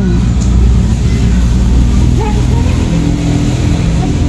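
A motor vehicle engine running steadily nearby, a low, even hum, with faint voices in the background partway through.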